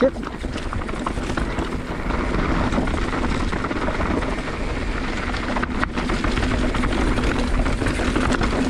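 Mountain bike rolling fast down a dry dirt trail, heard from a handlebar-mounted camera: a steady rush of wind on the microphone, with tyres crunching over the dirt and the bike rattling over rough ground.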